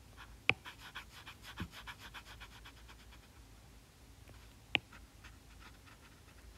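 A stylus tip taps once on a tablet's glass screen, then scribbles back and forth in quick, light strokes, several a second, for about two seconds while shading an area with a highlighter. Another single sharp tap comes near the end.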